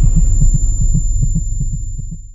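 Deep rumbling sound-effect tail of a cinematic logo reveal, throbbing about five times a second with a thin steady high whine above it, fading out over the last second.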